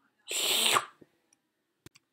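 A short, noisy human breath close to the microphone, lasting about half a second, followed by a faint click near the end.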